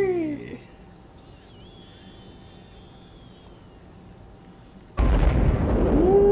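A voice trails off, then a few seconds of low background. About five seconds in, a loud low rumble cuts in suddenly and keeps going: the film soundtrack of military Humvees on the move.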